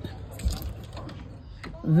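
Gusty wind and light rain outdoors as a steady low noise, with a low thump about half a second in and a few faint clicks.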